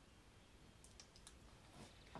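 Near silence: room tone, with a few faint, short high clicks about a second in.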